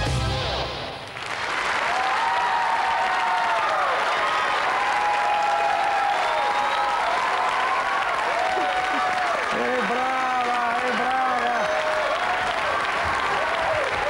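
The song's backing music ends about a second in, and a studio audience breaks into steady applause, with high-pitched cheering shouts rising over the clapping.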